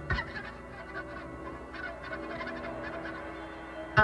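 A live electric rock band in a sparse, quiet passage: held electric guitar and bass notes ring on, with a sharp low hit just after the start.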